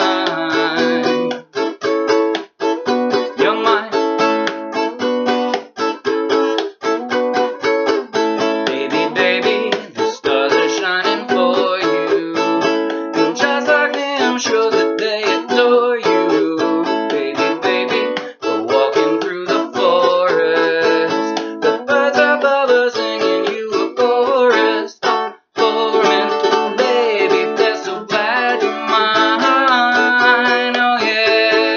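Ukulele strummed in a steady rhythm, with a man singing a pop song along with it.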